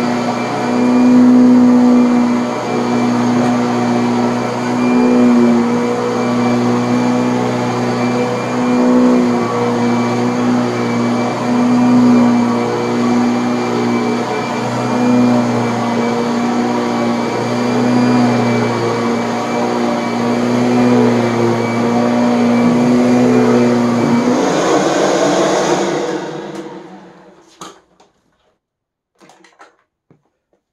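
Upright vacuum cleaner running while pushed back and forth over carpet, its motor tone swelling and easing with each stroke about every second or two. The motor is switched off about four-fifths of the way through and winds down over a couple of seconds, leaving a few faint clicks.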